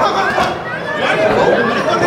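Spectators' voices talking and shouting over one another, a steady loud chatter of several people at once around a boxing ring.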